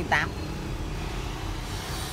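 Steady low rumble of road traffic in the background, after one short spoken word at the start.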